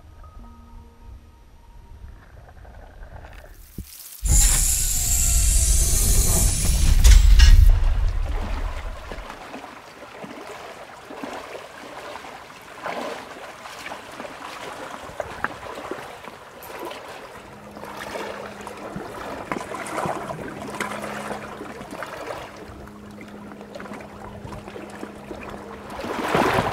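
Shallow lake water splashing and lapping as a person wades out onto a pebbly shore, with uneven small splashes and crackles. About four seconds in, a sudden loud rushing water noise lasts several seconds. Soft background music plays at the start.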